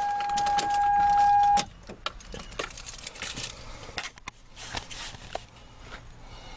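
Car keys jangling and clicking at the ignition of a 2001 Toyota Sienna, over a loud, steady warning tone that cuts off suddenly about a second and a half in, as the key is switched off and pulled out. After that only scattered key clicks and rattles remain.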